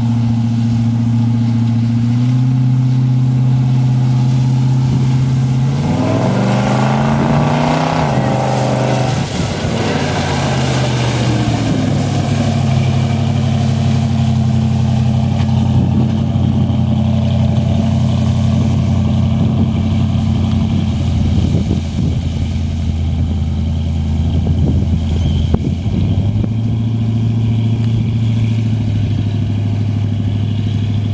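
Engine of a full-track swamp buggy running steadily, revving up with a rising pitch about six seconds in, then dropping back and settling into a steady drone as the buggy drives past through the marsh grass. The engine note steps up again near the end.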